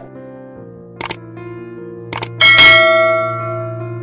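Subscribe-button animation sound effect: a quick double click about a second in, another double click about two seconds in, then a loud bell ding that rings and slowly fades. Soft piano music plays underneath.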